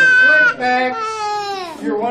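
A high-pitched wailing cry, held at first and then sliding down in pitch before fading out just before the end.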